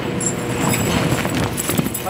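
Quick footsteps and scuffing on a studio stage floor as a man dashes and throws himself sideways in a stunt fall, a run of short knocks and shuffles.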